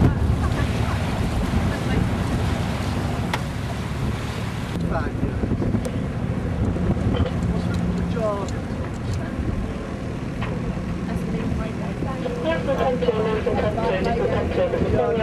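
Wind buffeting the microphone over a steady low rumble aboard a yacht, with faint voices now and then.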